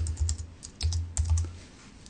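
A run of light, irregular clicks, about a dozen over two seconds, with a low rumble that comes and goes beneath them.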